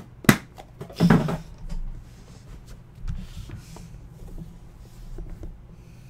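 Hard black Flawless Football card briefcase being handled and opened: a sharp click just after the start, a louder knock about a second in, then a run of faint clicks and rubbing as the case is worked open.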